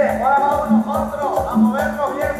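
Live band playing Latin dance music, with a low bass note on a steady beat about every three-quarters of a second, percussion, and a melody line that slides up and down between notes.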